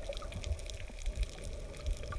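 Underwater sound of air bubbles fizzing and crackling as they rise around a diver just after entry, over an irregular low churning rumble of moving water. A faint steady hum runs underneath.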